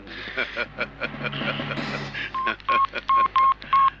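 Mobile phone keypad tones as a number is dialled: five short beeps in quick succession in the second half.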